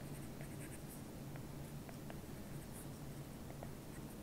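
Faint, irregular light ticks and scratches of a stylus tip on a tablet's glass screen as words are handwritten.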